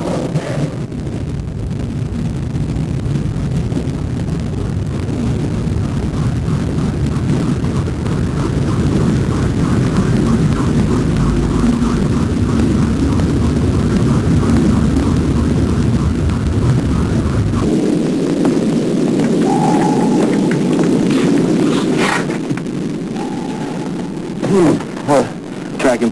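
Deep, steady underwater rumble of a submarine underway, with a faint regular propeller beat. About two-thirds through the deepest rumble drops away, leaving a thinner hum with two short steady tones and a click. A man's voice comes in near the end.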